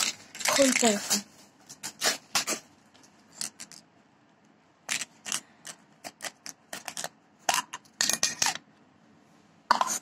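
Scattered sharp clicks and light rustles of a coin's small package being handled and opened by hand, irregular, a few each second. A brief bit of speech comes about a second in.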